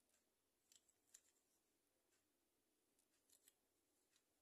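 Near silence broken by a few faint, short scratchy strokes of a small bristle brush on a die-cast toy pickup, about a second in and again near the end.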